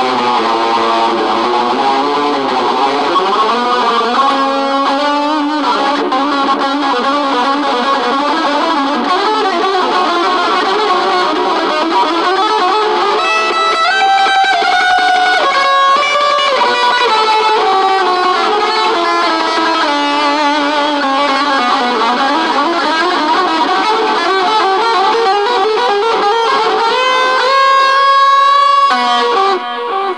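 Electric guitar played solo in a continuous stream of quick single-note runs, the pitch stepping rapidly up and down, breaking off near the end.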